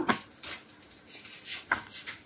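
Paper pages of a thick textbook being turned by hand: a few short, soft rustles and flicks of paper.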